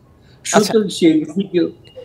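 Speech: a man's voice talking briefly after a short pause, with a short, faint high beep near the end.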